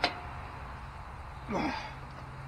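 A single sharp click from a wrench on a lug nut of a pickup's wheel as it is tightened, followed about a second and a half in by a short grunt that falls in pitch.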